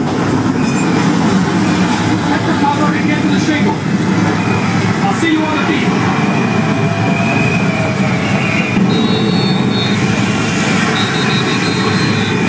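Dense crowd noise of many people talking and calling out, with two long high whistles in the second half.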